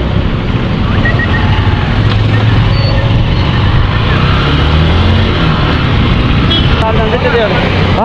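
A motorcycle engine runs steadily while the bike is ridden along a road, with wind rushing over an action camera's microphone. Brief voices come in near the end.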